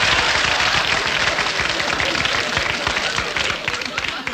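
Studio audience applauding and laughing after a joke, easing off slightly near the end.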